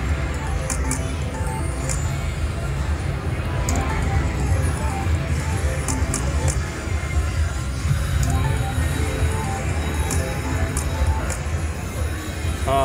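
Casino floor din with background music and chatter, over an IGT Megabucks three-reel slot machine spinning its reels on losing spins. Short clicks sound as the reels stop, three in quick succession about half a second apart near the end.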